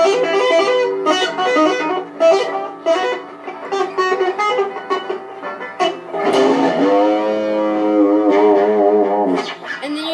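Electric guitar played with two-handed tapping: fast runs of tapped and hammered-on notes for about six seconds, then a held note with a wavering vibrato.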